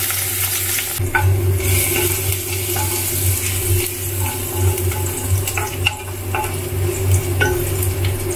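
Chopped garlic sizzling in hot oil in a wok, stirred with a spatula that clicks and scrapes against the pan now and then, over a steady low hum.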